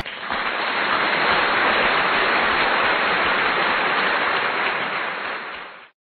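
A steady rushing hiss of noise with no tune or pitch in it. It starts suddenly and fades out just before the end.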